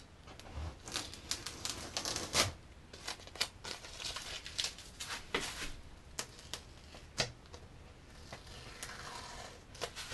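Masking tape being peeled off the rail of a surfboard from the tack-free epoxy hot coat and bunched up in the hands: an irregular run of crackly tearing and crinkling.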